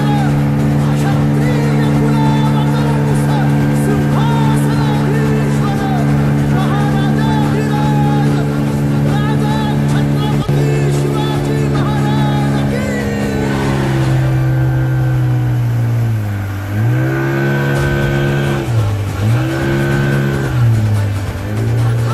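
Small boat's engine running steadily under way, with a low even drone. In the second half its pitch drops and comes back up three times as the throttle is eased off and opened again.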